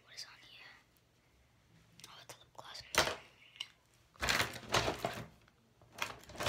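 A girl whispering in a few short, breathy bursts, too quiet for words to come through.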